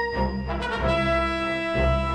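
Orchestral film-trailer music: a brass section holding sustained chords that change twice, over a low beat.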